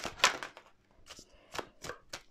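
Oversized tarot card deck being shuffled in the hands: a few short, sharp card slaps, two near the start and two more about a second and a half later.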